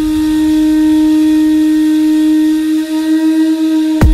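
Drum and bass breakdown: a single long held note at a steady pitch with no beat under it. The drums crash back in just as it ends.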